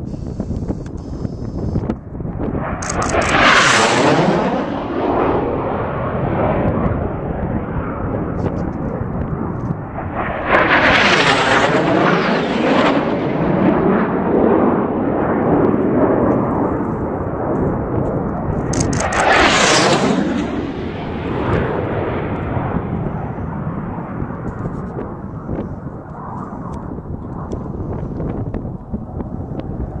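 Racing airplanes flying low past, one after another: three passes about eight seconds apart, each swelling to a loud rush and then fading away.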